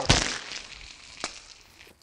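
Egg shakers landing on a person and dropping to the floor: a sharp clack at the start, a fading rattle, then a single click about a second in.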